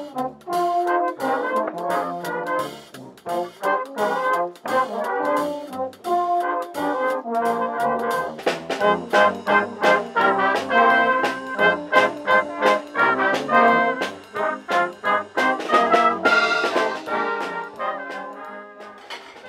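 Brass band playing a piece outdoors: trombones, trumpets and tuba over a drum kit keeping the beat, louder and fuller in the second half.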